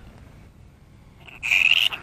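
Grey-headed flying-fox pup screeching as it is picked up in a towel: a harsh, loud squawk about one and a half seconds in, then a shorter second one at the end. This is a distress call at being handled.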